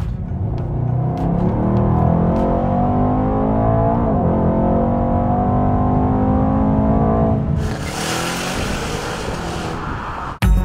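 Mercedes-AMG E63 S 4Matic+'s twin-turbo V8 accelerating hard, its note rising, dropping briefly at an upshift about four seconds in, then rising again. After about seven and a half seconds the engine note gives way to a steady rushing noise.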